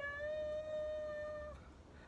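A singer's voice, unaccompanied, gliding up into one long held high note that stops about one and a half seconds in.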